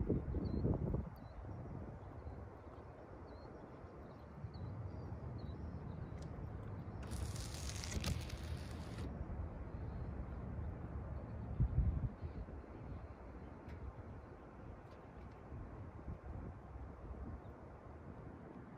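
Faint outdoor ambience under a thunderstorm: a steady low rumble with a few faint bird chirps early on, a two-second hiss about seven seconds in, and a short low thump near the twelve-second mark.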